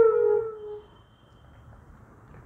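Flute playing raag Jhinjhoti: the tail of a long held note slides slightly down in pitch and fades out under a second in, leaving a pause with only faint background hiss.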